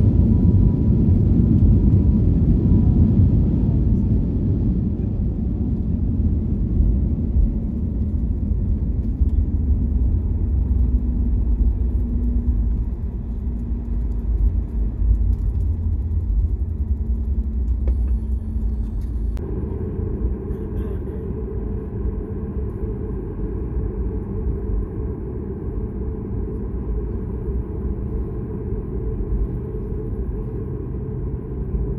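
Cabin sound of a Boeing 737 MAX 8 rolling on the ground just after landing: a steady low rumble of its CFM LEAP-1B engines and wheels that slowly quietens as the jet slows to taxi speed. In the first few seconds a thin engine whine slides down in pitch.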